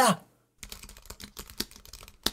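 Typing on a computer keyboard: quick, irregular key clicks starting about half a second in.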